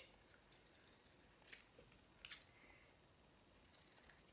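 Faint snips of scissors cutting a small shape out of fabric backed with paper-lined iron-on adhesive: a few quiet cuts, the two clearest about a second and a half and two and a quarter seconds in.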